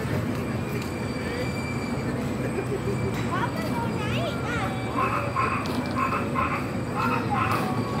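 Carousel running: a steady low rumble from the turning ride, with faint voices around it.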